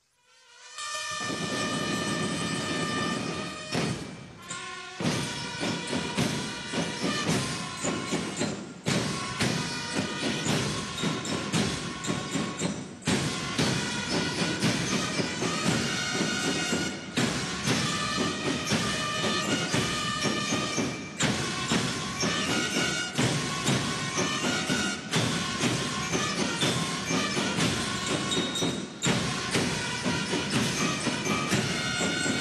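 Military band music with pitched instruments over regular drum beats, starting about a second in: ceremonial honours music.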